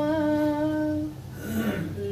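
A woman singing unaccompanied, holding one long, steady note at the end of a Punjabi sung line for about a second. A brief pause follows, and the next line starts near the end.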